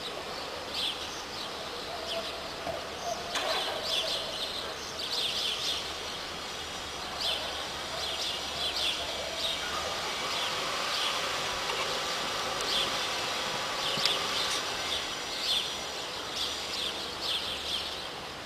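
Small birds chirping repeatedly in short clusters over steady outdoor background noise, with a sharp click about three seconds in and a louder one about fourteen seconds in.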